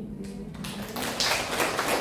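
The last held notes of a violin and piano die away as audience applause starts about half a second in and swells, clapping filling the room by the end.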